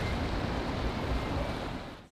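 Sea waves washing against a rocky shore, with wind rumbling on the microphone, slowly fading out near the end.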